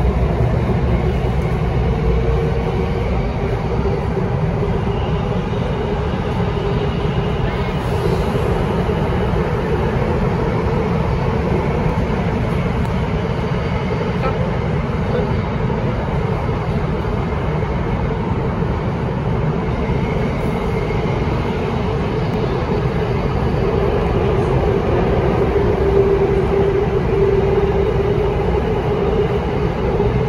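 Cabin noise inside a Bombardier Movia C951 metro car running underground: a steady rumble of wheels and running gear, with a hum that swells twice and is strongest near the end.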